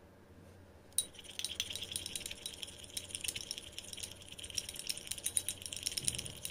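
Steel spoon stirring a mix of aloe vera gel and oils in a small glass bowl, clinking rapidly against the glass. It starts with a sharp clink about a second in.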